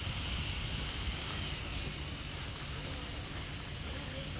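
Steady outdoor background noise: a low rumble with a high hiss over it that eases off a little under halfway through.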